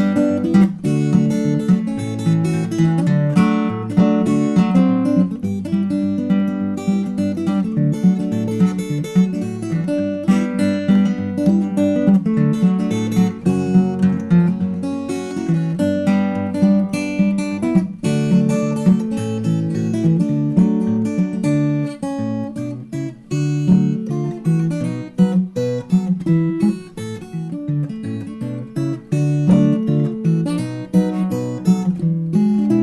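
Solo steel-string acoustic guitar fingerpicked in a ragtime style: a fast, steady run of plucked notes, with bass notes under a melody line.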